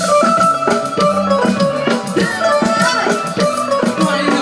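Live Balkan dance band playing an instrumental passage through PA speakers: a clarinet melody over a steady drum beat.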